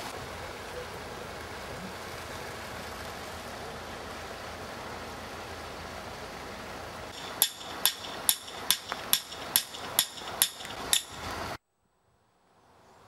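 Steady outdoor hiss, then, over the last few seconds, a run of about nine sharp, ringing knocks at roughly two a second, like hammering. The sound cuts off abruptly near the end.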